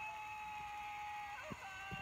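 Television game-show audio playing from laptop speakers during a panel sliming: a long held tone that rises in and falls away, then a second, higher held tone near the end, with a few short low thumps.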